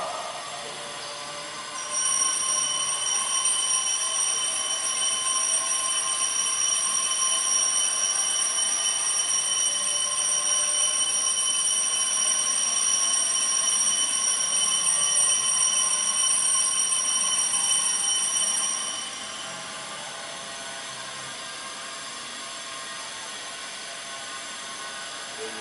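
A steady, high-pitched whistling tone that comes on sharply about two seconds in, holds at one pitch, and stops a few seconds before the end, over a low steady room hum.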